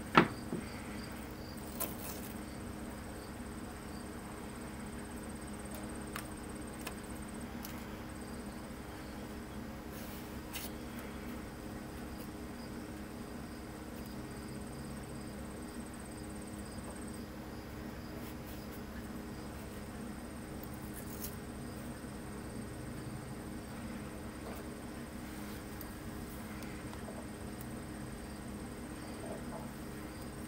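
Quiet room tone: a steady low electrical hum and a thin high-pitched whine that cuts out a few times, with a few faint small clicks.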